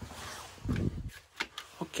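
A man's voice making a short, muffled low sound about two-thirds of a second in, then saying "Oh" near the end.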